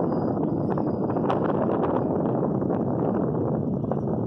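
Wind buffeting the microphone high up under a parasail: a steady, loud, low rushing noise, with a few faint clicks over it.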